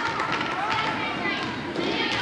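Spectators' voices calling out and shouting over one another at a youth basketball game in a gym, with occasional short knocks from the court.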